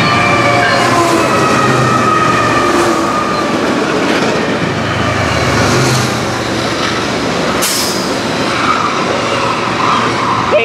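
A lashup of diesel freight locomotives, led by GE ET44AC units, passing close at speed and giving way to freight cars, with a steady loud rumble of engines and steel wheels on rail. A whine falls in pitch over the first few seconds as the units go by, and there is a brief high-pitched burst about eight seconds in.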